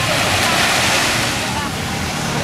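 Surf washing ashore, a hiss that swells about half a second in and then eases off, with faint distant voices.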